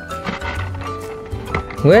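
Background music with a steady low beat, over light tapping and handling of a stiff foil sheet and a plastic blister tray.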